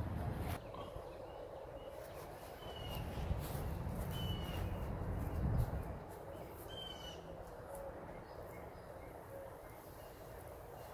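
Birds chirping outdoors: a few short, thin whistled notes spaced seconds apart. Under them a low rumble swells between about three and six seconds in.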